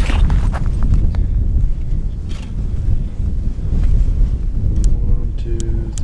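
Steady low rumble of wind and handling noise on the microphone. Near the end come a few sharp ticks as the crossbow scope's windage turret is turned click by click.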